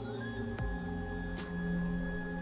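Ambient background music with steady held tones. About a fifth of a second in, a single high whine rises briefly and then holds steady: the telescope mount's motor slewing the RA axis east from the hand controller.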